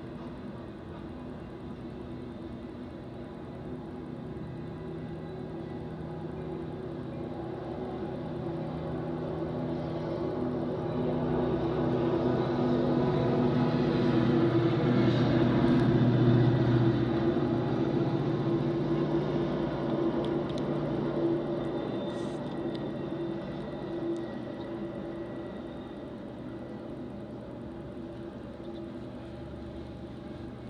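A diesel train passing: a locomotive's engine grows louder to a peak about halfway through, then fades, its pitch dropping as it goes by, over the steady rolling of freight cars on the rails.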